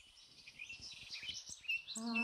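Small songbirds chirping and singing, many short high notes and trills overlapping, fading in and growing louder.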